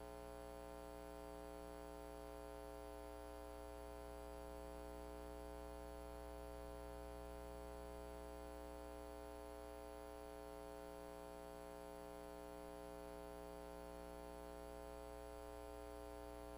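Faint, steady electrical mains hum with a buzz of many overtones, unchanging, with no other distinct sound on top.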